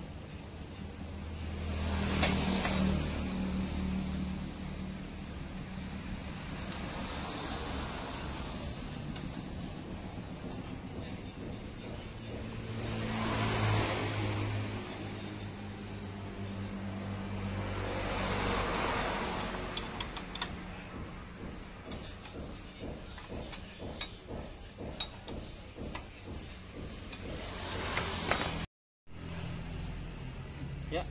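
Road vehicles passing several times, each swelling and fading over a few seconds. In the last third, a run of short metallic clicks and clinks from hand tools working on the engine. The sound drops out for a moment near the end.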